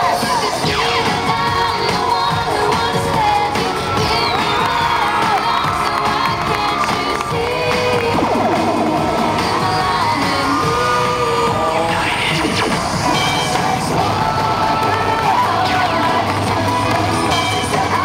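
Cheerleading routine music played loud over arena speakers, with a crowd cheering and shouting over it as the team builds stunts.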